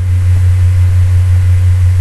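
Steady low hum with faint hiss, the recording's constant background noise, with no other sound.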